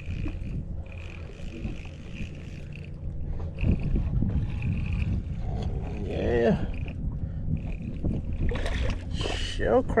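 Fishing reel being cranked to bring in a fish, its whine coming in short stretches, over a steady low hum and wind rumble. Brief voices near the end.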